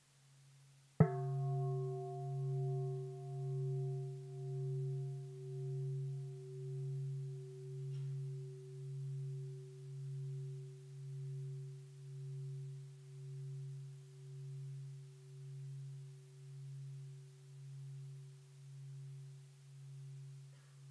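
Large Buddhist bowl bell struck once about a second in, then ringing on with a deep hum that swells and fades about once a second while its higher overtones die away. It is a mindfulness bell, sounded so that listeners stop and return to themselves.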